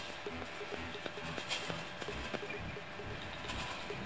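Sand being sprinkled onto a Chladni plate, the grains landing in light, irregular ticking and pattering, with a few brief hisses of pouring.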